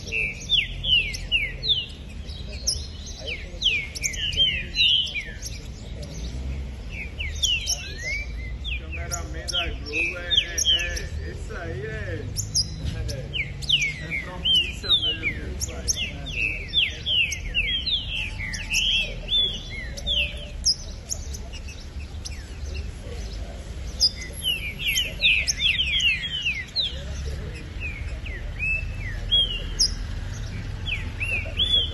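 Several caged songbirds singing at once, with rapid overlapping downward-sweeping chirps in repeated flurries, over a low background rumble.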